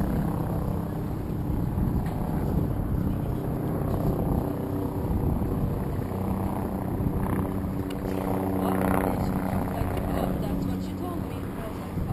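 A steady, low motor drone, with indistinct voices talking in the background about two-thirds of the way through.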